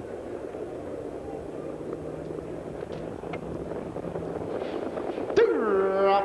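Steady background noise at a harness racetrack. Near the end, the race announcer's voice comes in with a long, drawn-out word as he begins calling the start.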